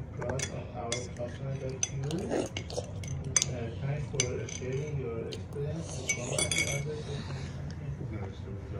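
A metal spoon clinking and scraping against crockery: a string of short sharp clicks, with a brief ringing clink about six and a half seconds in.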